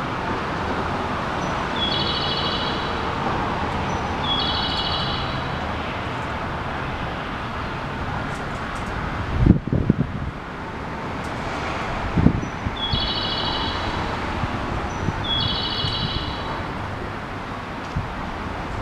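Steady outdoor background noise with short chirping calls, twice in quick succession early on and again twice about eleven seconds later. Two sudden low thuds around the middle are the loudest sounds.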